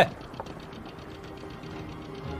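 Faint, rapid, even ticking over a low background hum.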